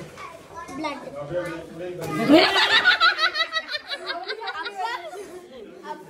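Several adult and child voices chattering, with a woman laughing, loudest about two seconds in.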